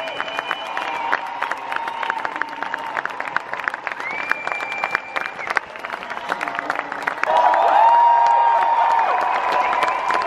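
Audience applauding and cheering: dense clapping throughout, with long held cheers from the crowd rising over it, loudest a little past the middle.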